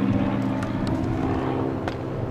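A steady engine drone, one unchanging low pitch, with a sharp click near the end.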